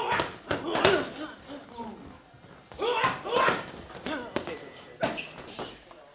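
Punches landing on boxing pads: sharp smacks in quick combinations of two or three, with short gaps between the combinations.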